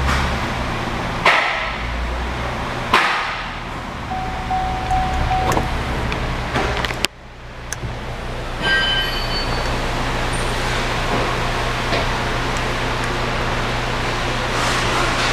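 A Cadillac SRX's 3.6-litre V6 idling steadily, heard from inside the cabin. A couple of sharp clicks come in the first few seconds, a short steady tone about four seconds in, and a brief chime of several high tones near nine seconds.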